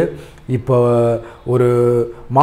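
A man's voice drawing out two long vowel sounds, each held at a steady pitch for about half a second or more, with no words spoken.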